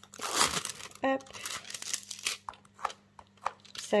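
Clear plastic film on a pencil box crinkling as it is handled: a loud burst of crinkling in the first second, then scattered smaller crackles.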